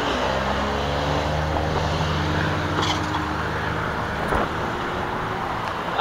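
A road vehicle's engine running close by as a steady low hum, its pitch rising slowly over the first few seconds. A single short thump comes about four seconds in.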